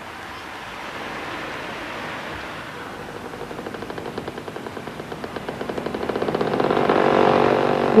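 Engine of an old small motorcycle approaching, its fast, even pulse growing steadily louder over the last few seconds.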